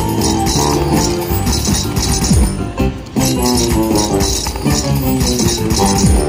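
Piggy Bankin' slot machine playing its jingly bonus-round music while the reels spin on the last piggy bank free spin. The music dips briefly about halfway through.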